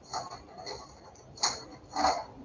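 Four short, sharp clicks or taps about half a second apart, the last two loudest, from something being handled on a desk.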